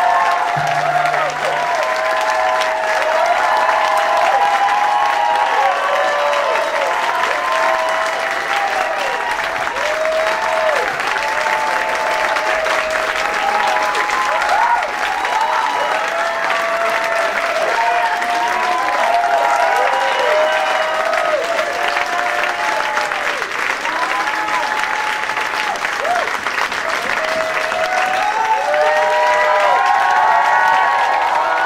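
Club audience applauding and cheering: steady clapping with many overlapping whoops and shouts from the crowd after a song.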